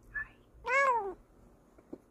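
Bengal cat giving a brief chirp, then one meow of about half a second that rises and falls in pitch.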